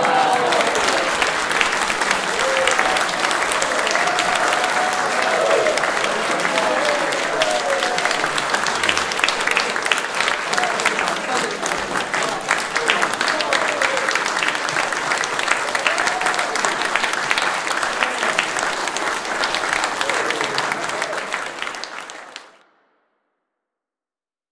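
Audience applauding steadily, with some voices mixed in, until the sound cuts off suddenly near the end.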